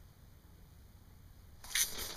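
Near quiet with a faint low rumble, then near the end a sudden burst of rustling handling noise as the camera and clothing are jostled while a fish is hooked through the ice.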